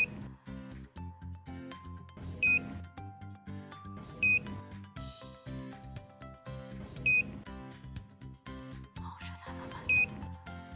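Short high electronic beeps from a wall-mounted Verified infrared thermometer confirming temperature readings, one every two to three seconds, over background music with a steady bass line.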